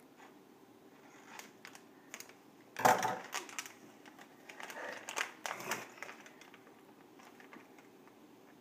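Foil Lego minifigure packet crinkling and crackling as it is handled and pulled at, in short irregular bursts, loudest about three seconds in and again around five seconds.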